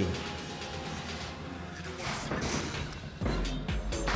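Background music under arena noise, with faint steady tones early on and a low rumbling thud near the end.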